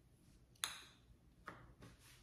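Hands settling a baseball cap and hair into place: one sharp click about half a second in, then two fainter ticks, against near silence.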